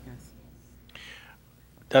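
A quiet pause between speakers: low room tone with a short breathy, whispered sound about a second in, and speech starting right at the end.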